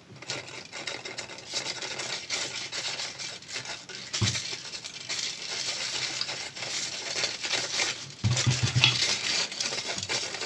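Crackling, scraping and tearing as the blown Yamaha subwoofer driver's paper cone and burnt voice coil are pulled apart by hand, with dull knocks about four seconds in and again near the end.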